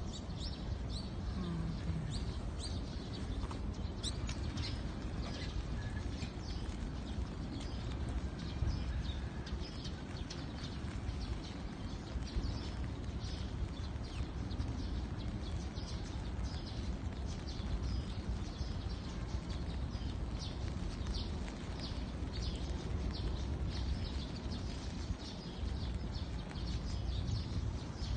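Birds chirping in short, high calls again and again over a steady low background rumble.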